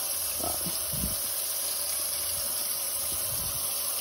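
Kitchen faucet running steadily into a stainless steel sink while a plastic spray bottle is filled with soapy water, with a couple of soft bumps around the first second.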